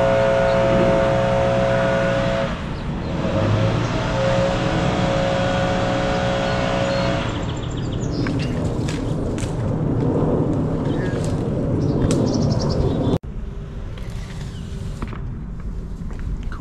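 An engine runs with a steady hum for the first several seconds. It gives way to rustling and a scattered series of sharp clicks, and the sound drops off abruptly near the end.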